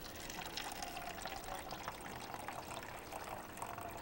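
A faint, steady stream of liquid trickling into a cup: a man urinating into a cup.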